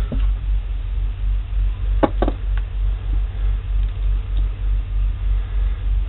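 A steady low mechanical hum that pulses evenly throughout. Two short clicks come close together about two seconds in.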